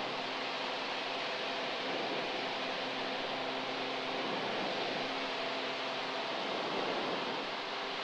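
Steady drone and hiss of a single-engine propeller plane's engine and propeller, heard in the cabin during the climb after takeoff, with power and propeller pulled back to a climb setting.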